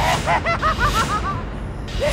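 A woman laughing loudly in a fast, cackling run of short honking 'ha' notes, each rising and falling in pitch.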